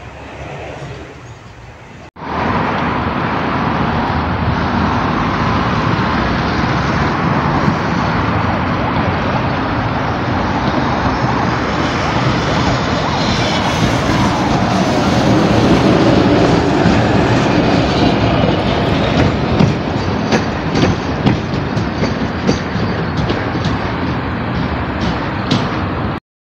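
Tram passing close by: a loud, steady rumble of wheels on rail with a motor whine that falls in pitch midway, then a run of sharp clacks of the wheels over rail joints toward the end. The first two seconds, before a sudden cut, are a quieter, more distant tram.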